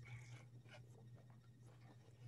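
Near silence: room tone with a faint steady low hum and a few faint ticks in the first second.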